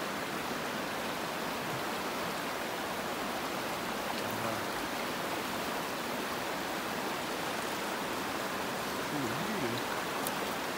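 Fast-flowing mountain stream rushing over rocks, a steady, even rush of water.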